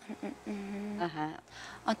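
A woman's held "mmm" hum at a steady pitch for about half a second, followed by a short voiced sound and the start of her speech near the end.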